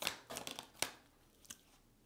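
Winter Waite tarot cards being handled and drawn from the deck: a few sharp card snaps and rustles in the first second, then one faint click.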